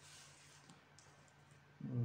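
Faint clicks and a brief light scratch of a stylus tip on a tablet's glass screen.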